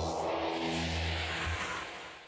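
Closing bars of an electronic TV theme tune: held synth bass notes under a rushing noise sweep, fading away near the end.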